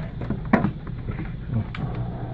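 Two brief knocks about a second apart, from a hand working the switch and hose of a pump in a water barrel, over a steady low hum.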